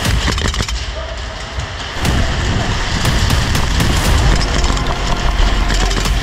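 Airsoft gunfire, with a quick string of sharp shots at the start.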